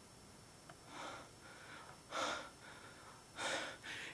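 A man breathing audibly through his mouth: three short breaths, about a second apart.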